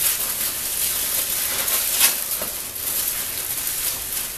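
Clear plastic bag crinkling and rustling steadily as masking tape is wound around its twisted neck, with a couple of sharp crackles about two seconds in.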